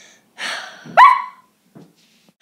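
A single dog bark: a breathy huff, then about a second in one short, sharp yelp that rises steeply in pitch.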